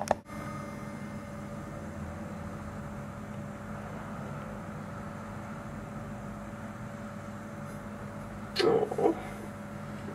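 Steady low background hum with a sharp click at the very start. Near the end comes a short, loud burst of a person's voice in two parts.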